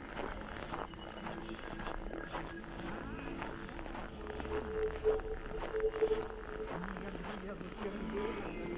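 Footsteps on packed snow as someone walks along, with people's voices talking in the background.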